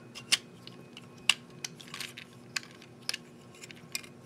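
Small plastic clicks from the joints of a Transformers Combiner Wars Rook toy as its arms are rotated back and around. About eight scattered clicks, the loudest about a third of a second in.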